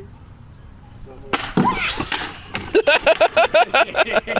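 A sudden crash about a second in as a man goes over backwards onto a patio, followed by shouts and loud laughter in quick bursts, about four a second.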